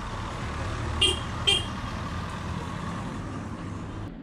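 Two short vehicle-horn toots about half a second apart, over a steady low street rumble.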